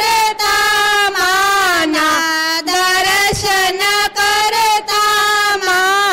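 A woman singing a devotional aarti hymn through a microphone: one high voice in long melodic phrases with brief breaths between them.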